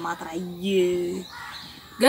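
A person's drawn-out vocal sound, one long note held at a steady pitch that breaks off a little past a second in.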